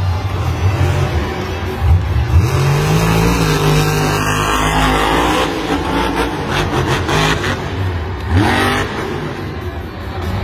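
Grave Digger monster truck's supercharged V8 revving through a freestyle run, its pitch climbing about two seconds in and again near the end.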